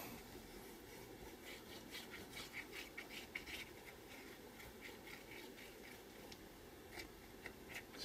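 Faint scratching and light ticking of a plastic glue bottle's nozzle dragging across card as liquid glue is squeezed out in lines, busiest in the first half.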